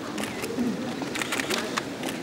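Press photographers' camera shutters clicking in quick clusters, heaviest after about a second, over a low background murmur.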